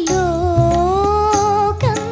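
A girl singing one long wordless held note that rises a little and slides down near the end, over live band accompaniment with a steady low beat.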